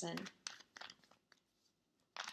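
A few soft, brief papery rustles of a tarot card deck being handled in the hand.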